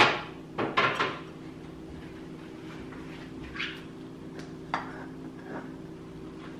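Plastic containers and kitchen items knocking and clattering as groceries are put away. There is a cluster of sharp knocks in the first second, then a few lighter taps.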